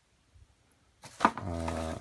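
About a second of near silence, then plastic bubble-wrap packaging rustling with a sharp crackle as hands reach into the box, joined by a man's voice held on one steady low note.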